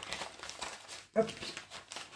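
Plastic packaging of a cross-stitch kit rustling faintly as it is handled, with one short pitched vocal sound a little over a second in.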